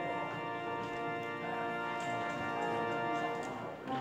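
Organ playing slow, sustained chords, the chord changing about a second and a half in, with a brief break just before the end as a new chord with a low bass note begins.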